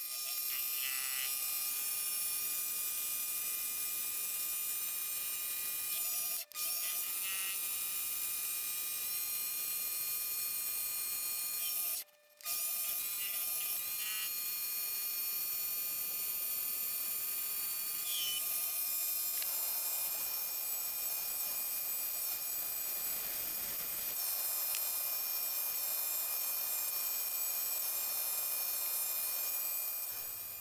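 Chinese mini lathe running steadily while turning an aluminium workpiece, its motor and gear train giving a constant high whine. The sound drops out twice for a moment, and a rougher hiss joins in during the second half as the part is finished and polished.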